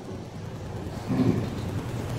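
A low rumbling noise that grows louder about a second in.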